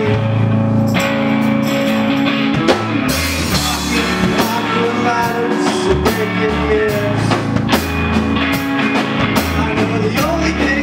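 Indie rock band playing live: electric guitars over a drum kit in an instrumental passage between sung lines, the drums and cymbals filling out about three seconds in.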